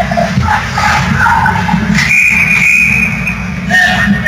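Ice rink game ambience: scattered shouts over a steady low hum, with a sustained high tone lasting about a second starting halfway through.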